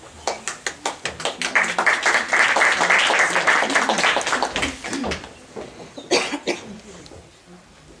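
Audience applauding with a rapid patter of claps that builds and fades out after about five seconds. A brief sharp noise follows about six seconds in.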